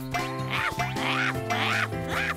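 Cartoon background music: a bouncy figure of short notes that swoop up and down, about two a second, over held low notes.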